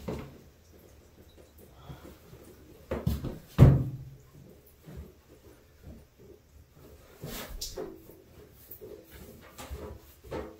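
Scattered knocks and bumps echoing in a tiled bathroom, the loudest a pair of heavy thumps about three seconds in, as a wet puppy is handled and dried.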